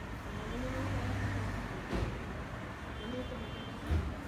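Steady background noise with faint voices in the background, broken by two dull knocks, one about halfway through and one near the end.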